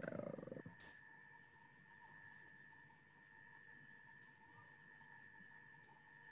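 Near silence: faint room tone with a faint steady high-pitched tone, after a voice trails off in the first half second.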